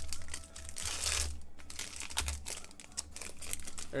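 Foil wrapper of a Panini Elite basketball card pack crinkling and tearing as it is ripped open by hand, loudest about a second in.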